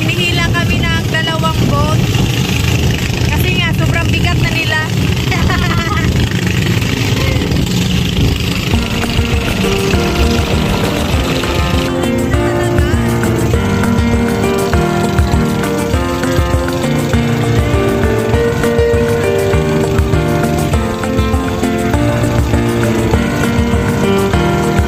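A boat engine runs steadily under wind and water noise, with voices over it in the first few seconds. About halfway through, background music takes over.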